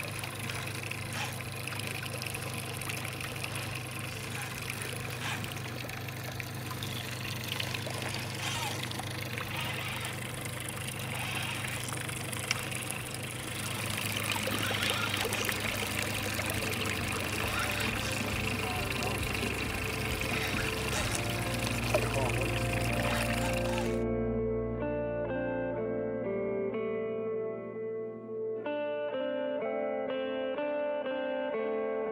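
Outdoor field sound from a boat on a river: a steady low hum under wind and water noise with scattered small knocks. About 24 seconds in it cuts off and plucked guitar music takes over.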